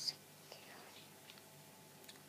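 Near silence: faint room hiss in a pause between spoken lines.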